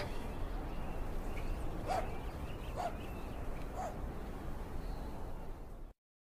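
Low steady background noise with an animal's three faint short calls, about a second apart, near two, three and four seconds in. The sound cuts off just before the end.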